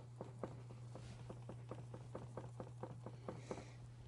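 Paintbrush dabbing and working paint on a palette: a run of quick, faint taps, several a second, over a steady low hum.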